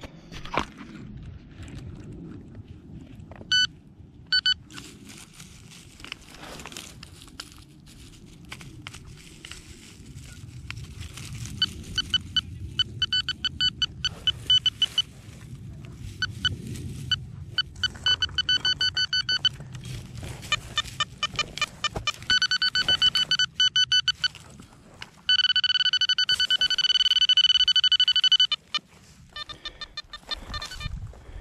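Metal-detecting pinpointer beeping in pulses that come faster as it nears the buried target, then holding one steady tone for about three seconds near the end. Underneath are scraping and scuffing sounds from digging in the soil.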